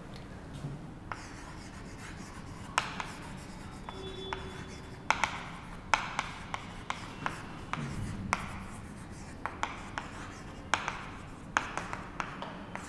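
Chalk writing on a chalkboard: a string of irregular, sharp taps and short strokes as a line of words is written by hand.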